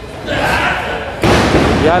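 Wrestlers crashing onto the lucha libre ring's canvas: a sudden loud slam about a second in, with the ring rattling on after it.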